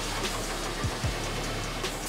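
A large LNG ship engine running steadily on its test bench: an even low hum under a wash of machine noise, with background music.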